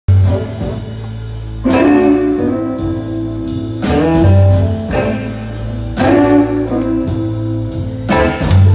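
Live swing band playing an instrumental blues passage: a steady walking bass line under repeated horn phrases that come in about every two seconds, with electric guitar, piano and drums.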